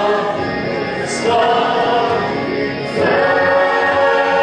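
A group of voices singing together with music, in held notes; a new sustained chord begins about three seconds in.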